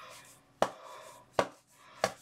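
Two sharp knocks about a second apart over a faint background hum.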